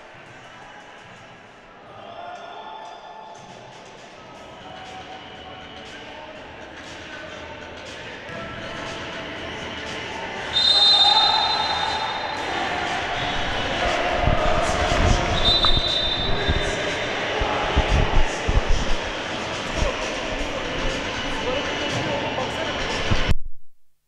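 Basketballs bouncing on the hardwood floor of a gym with players' voices echoing in the hall, the thuds getting busier in the second half. Two short referee whistle blasts sound, about ten and fifteen seconds in. The sound cuts off abruptly just before the end.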